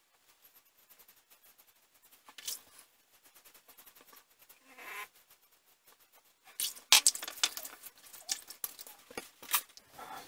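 Double-edge safety razor, a vintage Gillette Flare Tip with a Feather blade, cutting through lathered stubble on a with-the-grain pass: a scratchy, crackling scrape. The first few strokes are faint and scattered. From about two-thirds of the way in, the crackles come louder and in quick, dense runs.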